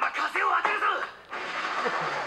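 Anime episode audio played back: a character speaks briefly, then a steady rushing noise starts about a second and a half in, with music underneath.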